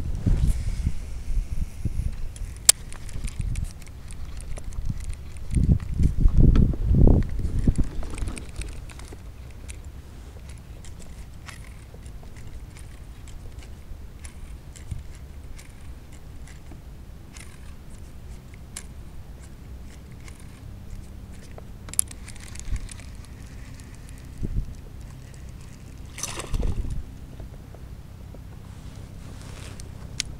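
Water sloshing and gurgling against a fishing kayak's hull, with a louder low rumble over the first eight seconds or so. Scattered faint clicks and a few short knocks come through later on.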